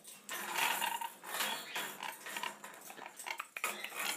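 Dusky lorikeet handling and tossing small plastic toys on top of its metal wire cage: a run of small clicks and clatters.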